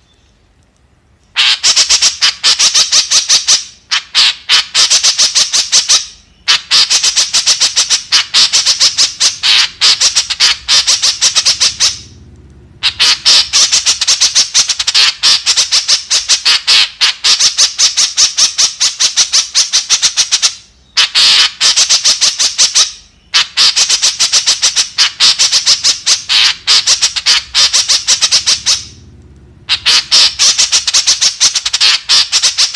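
White-breasted woodswallow (kekep) calling: long bouts of rapid, harsh chattering notes, about ten a second. The bouts are broken by short pauses and begin about a second and a half in.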